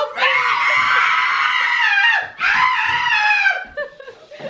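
A person screaming twice: two long, high-pitched screams, the first about two seconds, the second a little shorter, each falling in pitch as it ends.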